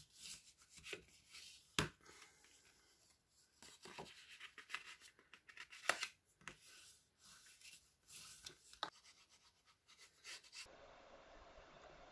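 Faint rubbing and scraping of a bone folder pressed and drawn over cardstock, broken by a few short light clicks of paper and tool on the table.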